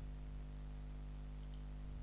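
Steady low electrical hum with faint hiss, and a single faint click about one and a half seconds in.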